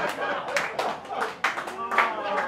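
Audience laughing and clapping after a punchline, with a run of irregular hand claps.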